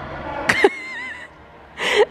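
A young girl's short, high-pitched squeal, wavering in pitch, about half a second in, then a quick breathy gasp near the end.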